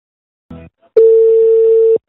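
Telephone line tone: a short thump, then a single steady beep about a second long that cuts off suddenly.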